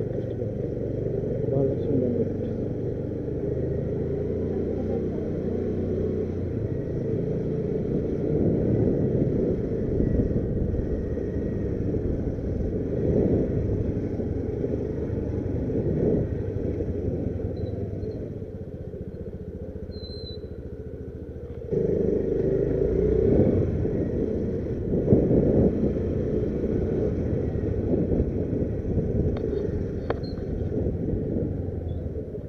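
Motorcycle engine running while riding slowly, its pitch rising and falling with the throttle. It drops quieter for a few seconds about two-thirds of the way through, then comes back up suddenly.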